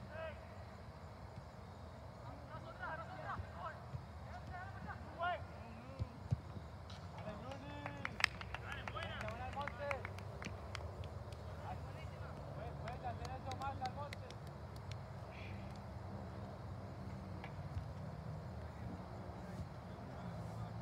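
Distant, unintelligible shouts and calls of soccer players across the field, on and off, with a few sharp knocks and a steady low rumble underneath.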